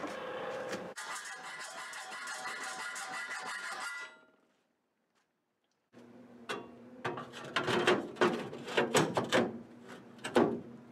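A few seconds of steady sound with several held tones, then a cut to dead silence. From about six seconds in comes a run of sharp knocks and clanks: a new steel sill panel being handled and set in place against the cross member of a Ford Model A body.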